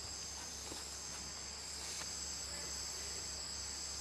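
A steady, high-pitched chorus of rainforest insects, with a low, even hum underneath.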